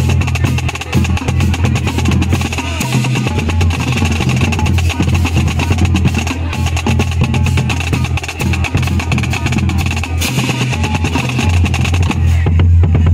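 Marching band drumline playing: rapid snare drum strokes and rolls with tenor drums and bass drums. A strong steady low note sits underneath, shifting pitch about three seconds in and again near ten seconds.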